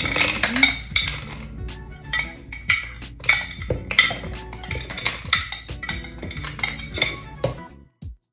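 Irregular clinks and knocks of a glass bowl against a plastic blender cup as frozen blueberries and kale are tipped in, with background music underneath.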